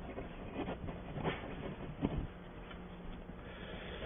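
Room tone of a quiet meeting room: a steady low hum with a few faint knocks and rustles.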